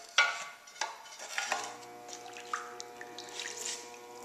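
A few sharp knocks of clay and tools being handled, then a steady electric hum from the potter's wheel motor that starts suddenly about one and a half seconds in.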